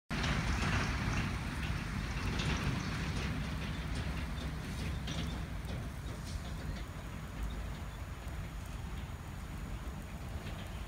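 Wind buffeting a camera microphone: a steady, uneven low rumble with a light hiss over it, a little louder in the first few seconds.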